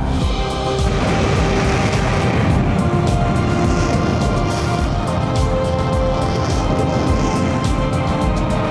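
Virgin Galactic SpaceShipTwo's hybrid rocket motor firing just after release from the carrier aircraft: a loud, steady roar that comes in at the start, under music with long held tones.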